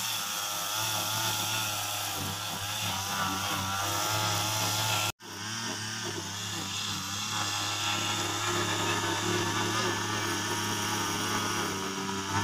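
Petrol brush cutter (string trimmer) engine running steadily as it cuts grass, its pitch wavering slightly under the load. The sound drops out briefly about five seconds in, then carries on the same.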